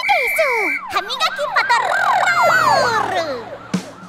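Cartoon police-siren sound effect: a short steady high tone, then several overlapping up-and-down siren wails that fade out near the end.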